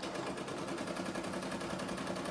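Home embroidery machine stitching a satin-stitch section, the needle going up and down in a fast, even rattle.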